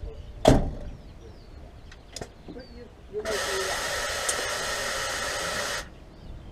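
A loud knock, a light click, then compressed air hissing steadily from a truck's air system for about two and a half seconds before cutting off sharply.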